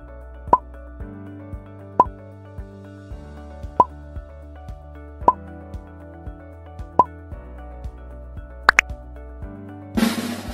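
Soft background music with a popping sound effect about every second and a half, five pops in all, then two quick higher blips near the end. A drum roll starts right at the end.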